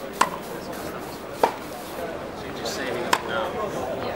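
Tennis ball struck by rackets in a baseline practice rally: three sharp pops about one and a half seconds apart.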